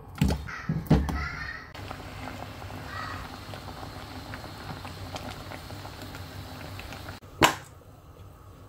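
Potatoes set down in a nonstick pan with a few knocks, then water boiling around the potatoes with a steady bubbling. One sharp knock stands out shortly before the end.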